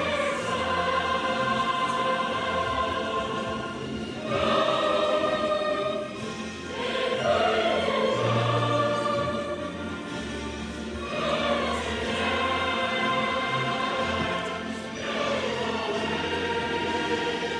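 A girls' school choir singing together in long held notes, a new phrase starting every three to four seconds.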